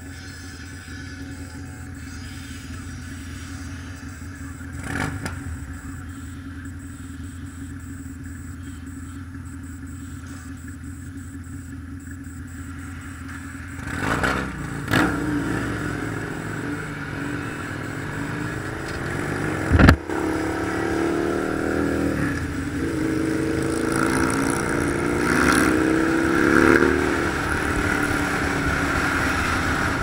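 Motorcycle engine running steadily at low speed, then accelerating from about halfway, its pitch rising in steps through the gears. There is one sharp knock about two-thirds of the way in.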